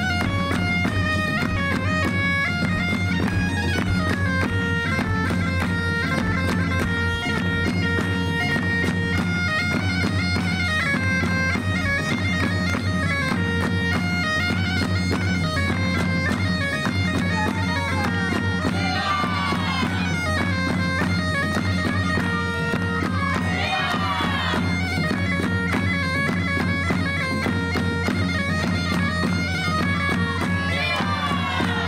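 Bagpipe playing a traditional folk dance tune over its steady drone, accompanied by drums.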